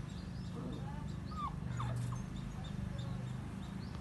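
Puppy whimpering: a few faint, short whines that rise and fall in pitch, over a steady low hum.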